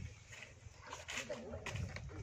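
Faint voices of people talking, with a few short noisy bursts.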